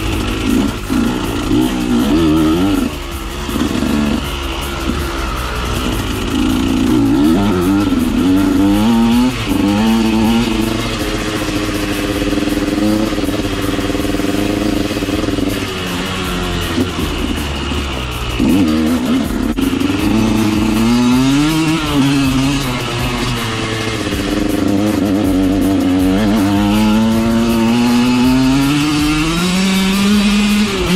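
2013 KTM 125 SX's single-cylinder two-stroke engine being ridden on dirt trails. It revs up and down repeatedly, its pitch climbing with each run up through the revs and dropping back off the throttle.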